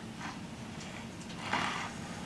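Faint handling noise from the plastic chassis being held, with a soft rustle about one and a half seconds in, over quiet room tone.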